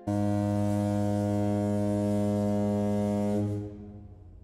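A ship's horn sounds one deep, steady blast that starts abruptly, holds for about three and a half seconds and then fades out.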